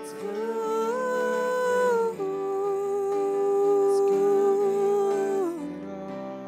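A woman hums a slow, wordless melody over sustained chords from a Yamaha S90 XS keyboard. She holds a higher note for about two seconds, then a lower note for about three, which drops away near the end.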